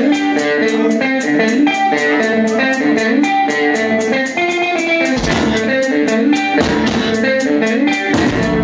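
Live rock band: electric guitar playing a run of quick picked melodic notes over a steady fast beat. Deep bass notes come in about five seconds in.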